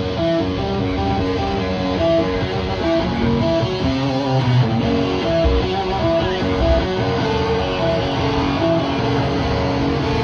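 Live rock band: electric guitar playing a melodic line of single held notes, with bass underneath and no drumbeat.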